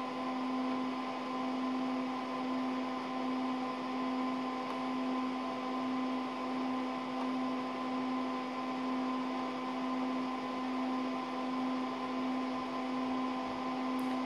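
Steady whirring hum of a running PDP-8/e minicomputer's cooling fans and power supply, with a low humming tone over an even hiss.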